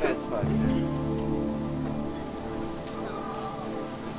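Background music with long held notes, over a faint steady hiss.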